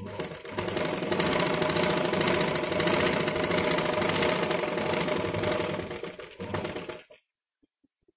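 Sewing machine stitching through layers of fabric at a steady running speed, then slowing and stopping near the end.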